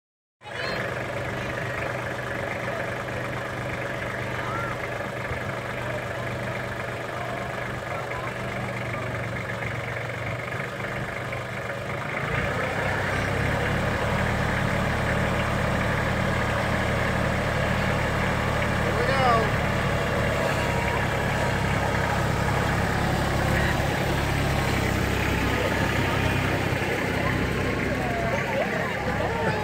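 Kubota compact diesel tractor engine running with a steady hum, growing louder about twelve seconds in. People's voices chatter faintly over it.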